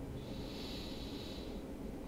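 A person's soft breath, heard as a faint hiss lasting about a second and a half, over a steady low background noise.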